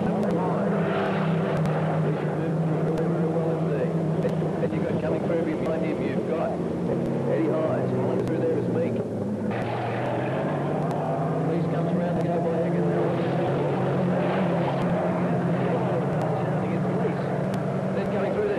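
Engines of several racing saloon cars running hard on a dirt track, a continuous multi-toned drone that rises and falls as the cars go by, with voices faintly underneath.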